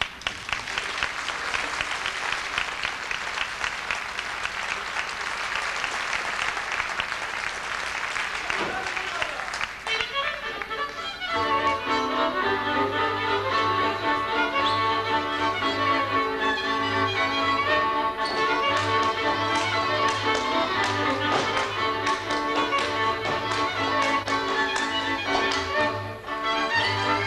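Audience applause with dense, irregular clapping. About eleven seconds in, a folk string band starts a dance tune, fiddles over the steady beat of a double bass.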